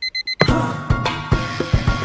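Digital alarm clock beeping, a quick run of short high-pitched beeps. After under half a second it gives way to music with a steady beat.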